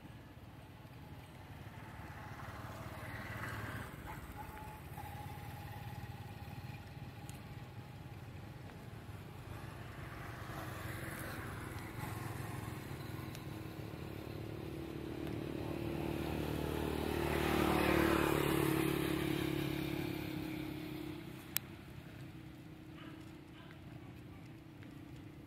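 A motor vehicle's engine passing by. It grows louder to a peak a little past the middle and then fades away. There is a single sharp click near the end.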